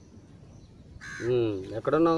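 A crow cawing once, a short harsh call about a second in, over a man's voice.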